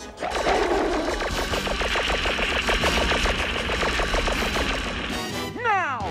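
Cartoon sound effect of a fiery blast from the giant robot's lion-head hands: a dense, rapid rattling noise at about ten pulses a second that lasts about five seconds, mixed with music. It ends in a falling, wailing tone.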